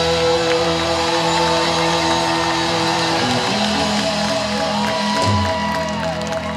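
Live rock band holding long sustained chords on keyboard and electric guitars, the closing chords of a song. The chord shifts about three seconds in and again near the end.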